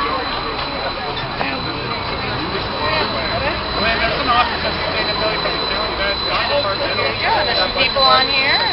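A streetcar approaching and pulling in alongside, with a low running rumble that grows through the middle, under the chatter of many voices.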